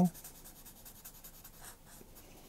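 Felt-tip permanent marker (Bic Marking Pocket) scribbling on paper, filling in a small solid shape with rapid back-and-forth strokes. The scratching is dense for about the first second, then thins to a few lighter strokes.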